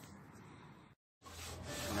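Wood rubbing on a board as a wooden cutting jig is slid into place on a table saw's top, over a steady low hum. Before that there is only faint background noise, broken by a moment of silence near the middle.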